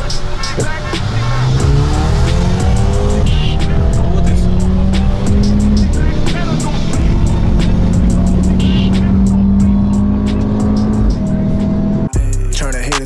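A car engine heard from inside the cabin at full throttle, its pitch climbing and falling back at each upshift over the first few seconds, then holding high and steady before easing off near the end. Background music with a steady beat plays under it.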